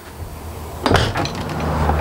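One sharp knock about a second in, the travel trailer's entry door being pushed open, followed by a steady low hum.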